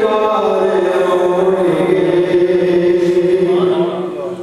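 A man singing an unaccompanied devotional chant (naat recitation) into a microphone. It is one long drawn-out phrase whose pitch slowly falls, dying away just before the end.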